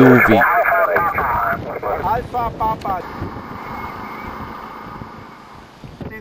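Kenwood TS-60 six-metre transceiver's receiver audio through its speaker: the garbled voice of a distant station breaking through band noise, then a steady hiss of static that slowly fades away.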